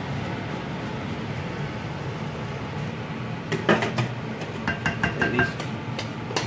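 A steady low hum, then, from a little past halfway, sharp knocks and a quick run of clicks as a utensil strikes a stainless steel saucepan while mashed potato is scraped out of it, the metal ringing briefly.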